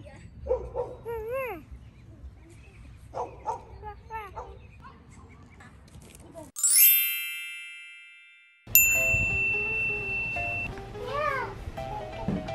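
Short pitched calls that rise and fall. About six and a half seconds in, a bright edited-in chime sound effect rings and dies away over about two seconds. A second ding follows with a held high tone, and then music comes in.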